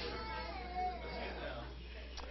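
A faint, high-pitched voice gliding up and down in pitch during the first second or so, over a steady low hum.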